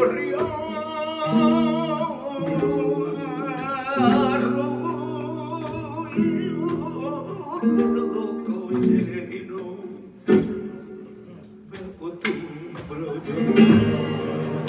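Live flamenco soleá: a man sings a long, ornamented line with wide vibrato over a flamenco guitar. The voice drops out about halfway and the guitar carries on alone, more quietly, with a sharp knock about ten seconds in, a few sharp percussive hits after it, and a loud strummed chord near the end.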